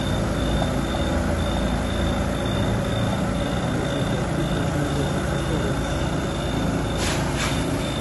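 Engine running steadily at a constant speed, from the spraying rig on the truck that feeds the disinfectant hoses. Two short hisses come near the end.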